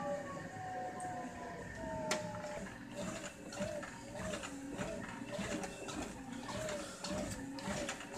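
ProForm Crosswalk Sport treadmill's drive motor whining, falling in pitch over the first few seconds as the speed is turned back down to 2. It then runs steadily at low speed with a regular beat about twice a second. There is a single click about two seconds in.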